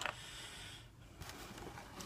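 Faint handling noise of plastic model-kit parts and rubber tires being moved around in a cardboard kit box, with a soft click near the start.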